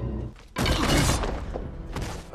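Crash sound effect from the film's fight scene: a sudden loud smash about half a second in that dies away over about a second.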